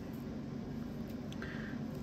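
Quiet room tone with one faint click a little past the middle, light handling of small parts bags.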